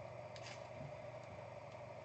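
Quiet room tone with a steady low hum and a couple of soft, faint clicks about half a second in as a trading card is handled.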